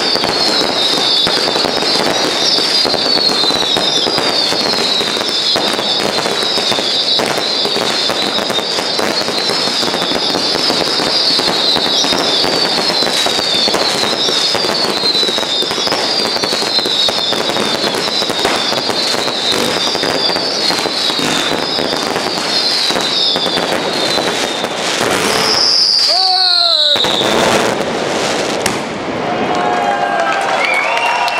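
Fireworks display going at full intensity: dense crackling and rapid bangs with many whistles, each falling in pitch, repeating over and over. Near the end one longer falling whistle rises above the rest before the barrage briefly dips.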